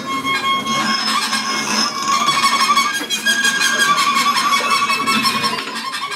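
Improvised experimental music played on amplified tabletop objects: held high, squealing tones with a quick run of clicks, several a second, from about two seconds in until near the end.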